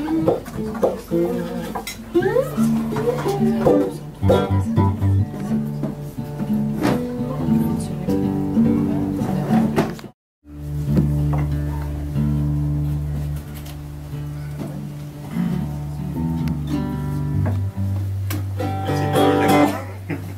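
Homemade cigar-box guitar being played: plucked notes that bend and glide in pitch, over long held low tones. The sound cuts out completely for a moment about halfway through.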